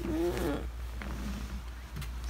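A girl's short, wavering sleepy groan at being woken.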